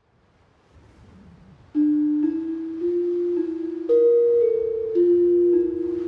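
A new piece of music begins after a silent gap between tracks. A faint low swell comes first, then from about two seconds in a slow melody of single notes on a mallet-struck metallophone, each note ringing on into the next.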